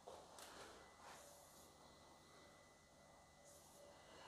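Near silence: faint room tone with a few soft rustles.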